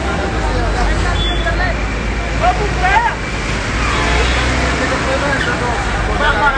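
Crowd of many people talking and calling out over one another, a dense babble of voices with no single speaker clear. A steady low rumble of traffic runs underneath.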